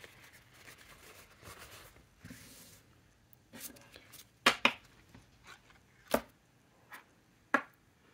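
Soft rustling of a paper towel, then stiff cardstock swatch cards being handled and set down on a tabletop, with a few sharp taps and clicks spaced out over the second half.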